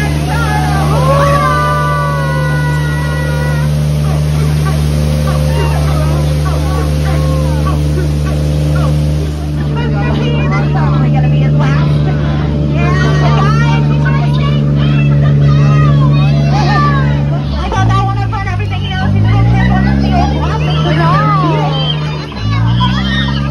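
Tour boat's motor running with a steady low hum. Near the end its note dips and rises a few times.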